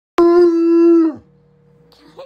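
Bloodhound giving one long, loud howl that starts just after the opening and holds a steady pitch, then drops in pitch and dies away about a second in.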